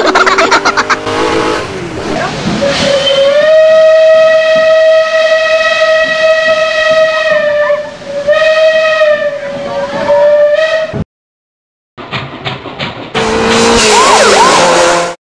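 Steam locomotive whistle: one long steady blast of about five seconds, then a shorter second blast, over a hiss of steam.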